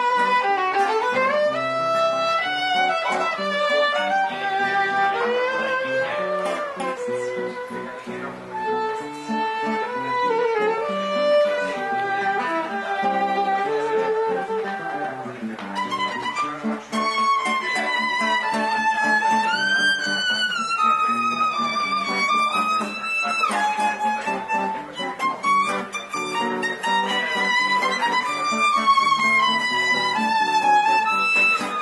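A violin played live at close range: a flowing melody with pitch slides and vibrato, over steady low notes underneath.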